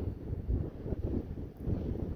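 Strong wind buffeting the microphone in uneven gusts, a low rushing noise that rises and falls.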